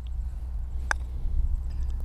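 A putter strikes a golf ball once, a single short, sharp click about a second in, over a steady low background rumble.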